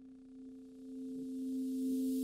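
Synthesised drone of two steady tones fading in and growing louder, with a hiss rising into the highs near the end: the opening swell of an animated logo sting.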